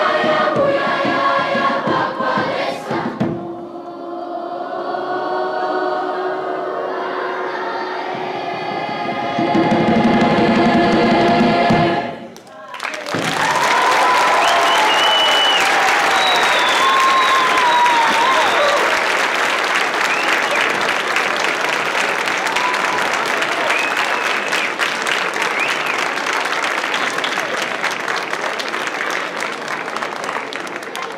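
A large mixed choir sings the close of a song and holds a final chord, which cuts off about twelve seconds in. The audience then breaks into applause and cheers, which run on and slowly fade.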